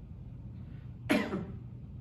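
A man's single short cough about a second in, over a low steady hum.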